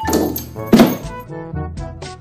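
Background music with a steady melody, broken by a sudden thump at the start and a louder thump a little under a second in.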